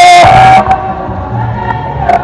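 Voices singing in church: a loud held note breaks off about half a second in, and softer sustained singing carries on.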